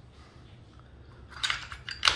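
Light metallic clicks and scraping as an IWI UZI Pro's slide is fitted back onto its frame, starting after a quiet first second.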